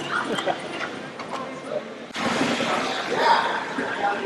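Indistinct voices and background chatter with no clear words, faint at first, then louder after an abrupt change about two seconds in.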